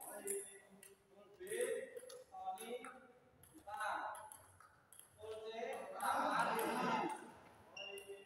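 Voices talking in a hall, with the light clicks of a table tennis ball on paddle and table.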